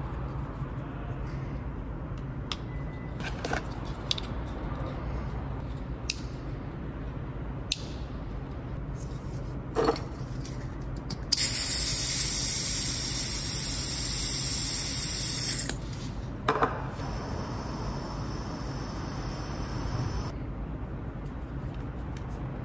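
Butane hissing as a refill can is pressed onto the fill valve of a Steinel butane soldering iron. The hiss lasts about four seconds, and a second, quieter hiss of about three seconds follows soon after. Earlier, a few light clicks and taps come from small parts being handled.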